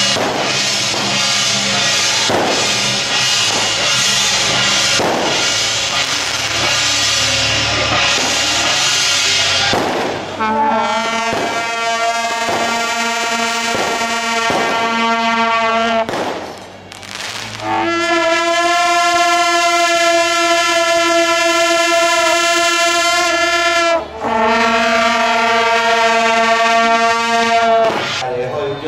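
Brass band with sousaphones playing: a busy passage for about the first ten seconds, then a series of long held chords, with brief breaks about sixteen and twenty-four seconds in.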